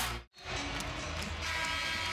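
Basketball arena crowd noise with music during a timeout. The sound cuts out for an instant a quarter second in, then comes back, and a held chord of several steady tones enters about a second and a half in.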